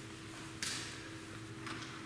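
A quiet pause with a faint steady hum, broken by a short sharp rustle about half a second in and a softer one near the end.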